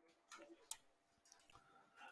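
Near silence with a few faint, short clicks, such as a computer mouse or keyboard makes when opening an entry on screen.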